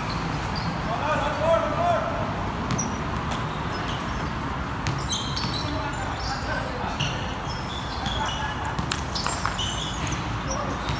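A pickup basketball game on a hard court: the ball bounces with sharp knocks, sneakers give short high squeaks, and a player's voice calls out about a second in, over a steady low background rumble.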